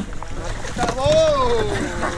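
River water sloshing around a Canadian canoe on the move, with wind on the microphone. A person's long, drawn-out call starts about a second in, rising then falling in pitch.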